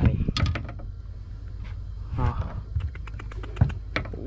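A scatter of small, sharp clicks and knocks, irregular like typing, from fishing tackle being handled in a small boat, with one louder knock near the end.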